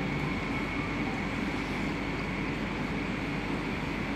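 Steady background noise of a large auditorium: an even hiss with a constant low hum.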